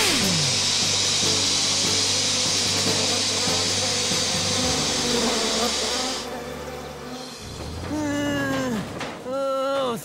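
Cartoon soundtrack: background music under a steady high hiss that stops about six seconds in, then a character's voice near the end.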